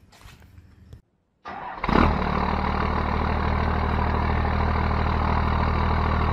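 A 12-valve Cummins diesel engine starting about a second and a half in, catching with a brief burst, then idling steadily.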